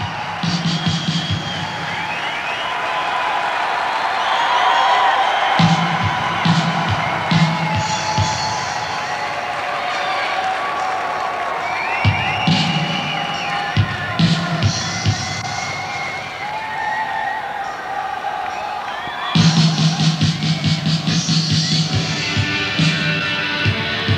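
Concert crowd cheering and whooping over the opening of a live rock song, with a low beat coming and going. About 19 seconds in, the band's beat comes in louder and steady.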